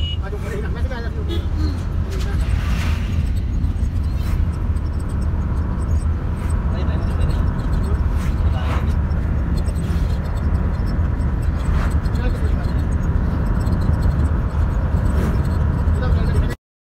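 Bus interior while driving: a steady low rumble of engine and road noise, with occasional knocks and rattles from the body.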